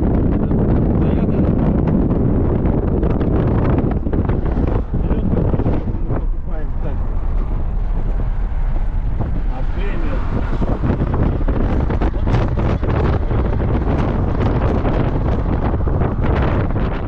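Wind buffeting the microphone in a moving car, with road and engine noise beneath it; loud and steady.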